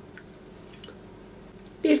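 A few faint drips of cooking oil falling from an emptied glass into a bowl of liquid yeast dough mixture.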